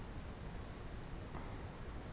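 Steady background noise of the narration microphone: a thin, constant high-pitched whine over a low hum, with no speech.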